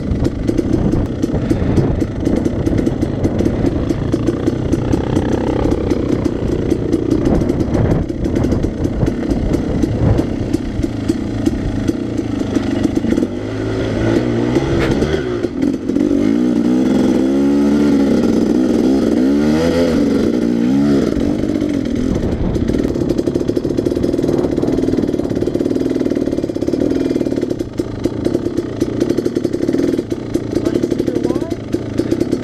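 Dirt bike engine under way on a rough trail, running at a steady pitch at first. Through the middle stretch the pitch rises and falls again and again as the throttle is worked up a steep climb, then it settles back to a steadier pitch near the end.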